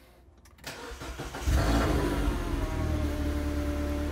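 Mini Cooper S (R56) race car's 1.6-litre turbocharged four-cylinder engine being started: a click, about half a second of cranking, then it catches with a loud rev flare about a second and a half in. The revs ease down and it settles into a steady idle.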